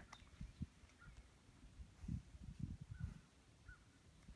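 Faint, muffled thuds of a horse's hooves stepping in soft sand as it is moved a step into position, mostly in the second half.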